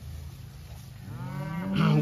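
Beef cattle mooing: a long moo rises in pitch from about a second in and grows loud toward the end.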